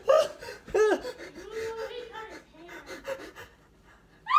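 A man's breathless cries and gasps after being startled: a sharp rising-and-falling yelp about a second in, then a longer, lower drawn-out cry and shorter panting sounds that die away near the end.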